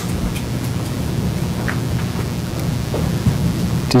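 Loud, steady rumbling hiss with a low hum, with no speech over it: noise on the courtroom microphone feed, which is giving sound trouble.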